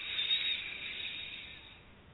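A person's long, deep in-breath, a soft airy hiss that fades away near the end.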